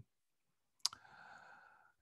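Near silence broken by a single sharp click a little under a second in, followed by a second of faint, low noise.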